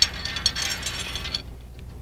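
Steel spreader plate on a theatre counterweight arbor being shifted by hand against the arbor rods, giving a quick run of metallic rattling and scraping clicks that stops about a second and a half in.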